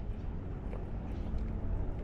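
Steady low rumble of wind buffeting the microphone outdoors, with no clear clicks or strokes standing out.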